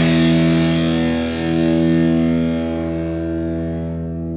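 Rock music: a held, distorted electric guitar chord ringing out, slowly fading over the last couple of seconds.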